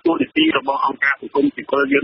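Continuous speech: a news reading in Khmer.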